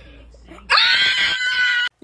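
A woman's high-pitched scream of excitement, held for about a second, starting a little under a second in and cut off abruptly near the end. It is a scream of joy as the subscriber count reaches 10,000.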